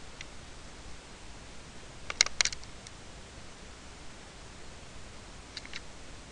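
Computer mouse clicks over faint room hiss: a quick cluster of several clicks about two seconds in, and a quick double click near the end.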